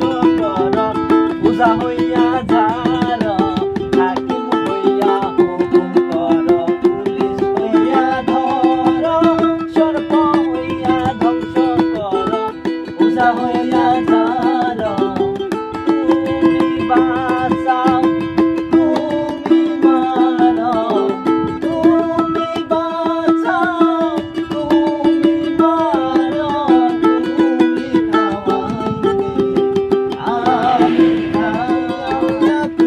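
Male voices singing a Bengali folk song, accompanied by a strummed ukulele and a plastic jar tapped by hand as a drum.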